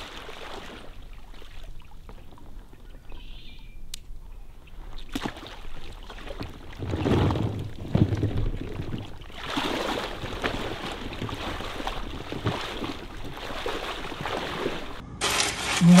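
Shallow marsh water sloshing and splashing around a hunter's waders as he wades, in surges that grow louder in the second half. Near the end it cuts abruptly to a brighter rattling sound.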